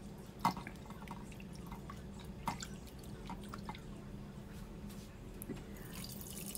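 Water splashing and dripping as hands wash pieces of tilapia in a glass bowl of water: soft, scattered drips and small splashes, the loudest about half a second in.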